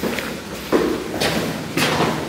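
Footsteps thudding on concrete stairs, a few heavy steps about half a second apart, echoing in a stairwell.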